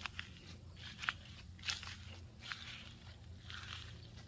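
Footsteps on a grass path, a few irregular sharp steps about every half second to a second, over a low steady rumble.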